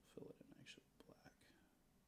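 Faint whispered speech for about the first second and a half, then near silence.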